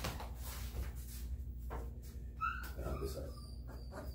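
Three-week-old Rhodesian Ridgeback puppies giving a few short, high squeaks and whimpers, about two and a half seconds in and again thinly near the end, with a few light knocks of handling.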